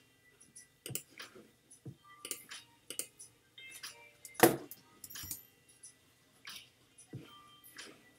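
Irregular clicks and taps from a computer mouse and keyboard, with one sharper, louder knock about four and a half seconds in.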